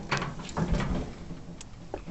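Handling noise of cheeseburgers being lifted off a grill grate onto a plate: rustling with a few light clicks and knocks, trailing off near the end.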